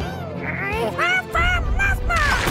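A cartoon creature voice babbling in short, high-pitched syllables that rise and fall, with soft music underneath. A low rumble starts a little past halfway as the creature begins to change shape.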